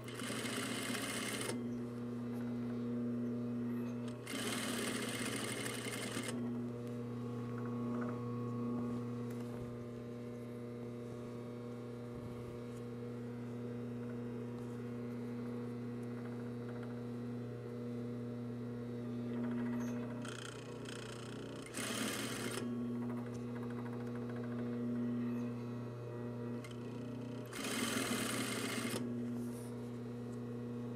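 Single-needle industrial lockstitch sewing machine stitching twill tape onto a fleece seam allowance in four short runs of a second or two each: near the start, about four seconds in, around twenty-two seconds and near the end. A steady hum fills the pauses between runs.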